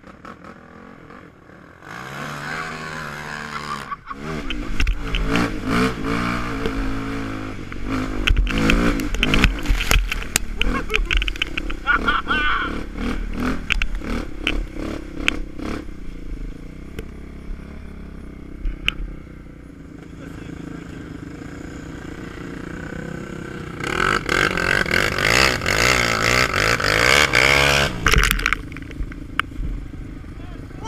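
ATV (quad) engines running and revving hard, rising and falling in pitch, loudest a few seconds in and again near the end.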